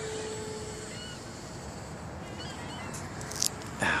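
Outdoor wind noise with a faint steady motor tone from a passing model airplane that fades out about a second in. A few faint bird chirps come a little past halfway, and there is a sharp click near the end.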